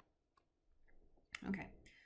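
A few faint, short clicks of a stylus tapping on a touchscreen while handwriting.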